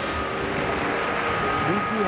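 Steady stadium background noise with voices in it; a faint steady tone enters about a second in.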